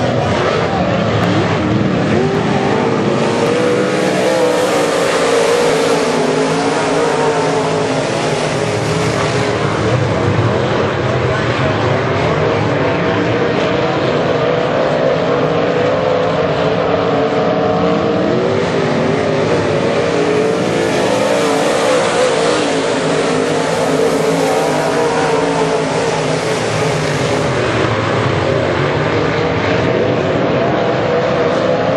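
A field of IMCA Modified dirt-track race cars running flat out around the oval, their V8 engines blending into one continuous loud note that wavers in pitch as the cars lift and accelerate through the turns. The sound swells and brightens twice as the pack comes past.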